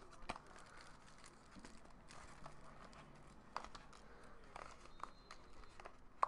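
Near silence with faint handling noise: a few soft clicks and light crinkling as hands work at a cardboard trading-card pack with plastic wrap beneath it.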